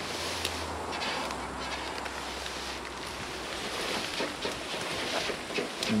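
Outdoor ambience: wind noise on the microphone with light rustling, over a faint low steady hum that fades out about halfway through.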